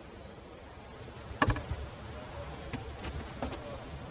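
Hand assembly of a car's roof mechanism: one sharp click about one and a half seconds in, then lighter knocks and rattles of parts being handled, over a low steady workshop hum.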